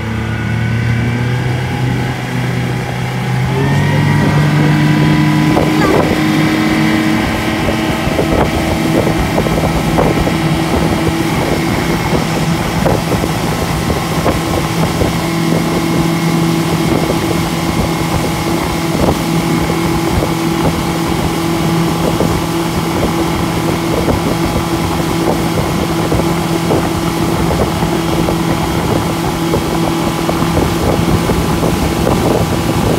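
Yamaha 115 outboard motor towing at speed. Its revs climb in steps over the first four seconds, then it runs steadily, with the rush of wind and water over the boat.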